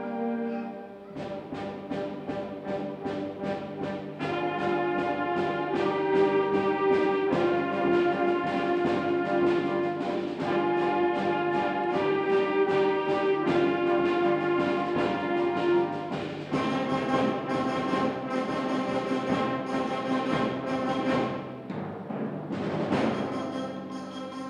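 High school concert band playing: sustained brass and woodwind chords over a steady, driving percussion pulse of about three beats a second, with timpani. Near the end the texture thins briefly, then returns with a loud crash.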